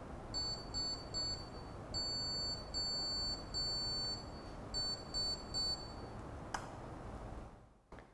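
Buzzer on a microcontroller board beeping SOS in Morse code with a high-pitched tone: three short beeps, three long beeps, then three short beeps. A single click follows about a second and a half after the last beep.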